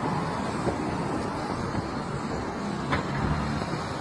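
City street traffic noise: a steady hum of car engines and tyres on the road.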